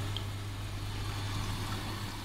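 Hydraulic bench pump running with a steady low hum, water flowing through the pipework of the bends-and-fittings rig.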